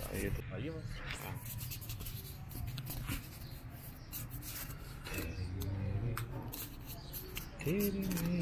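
Low voices speaking briefly near the start, about five seconds in and again just before the end, with scattered light clicks and rustling between them.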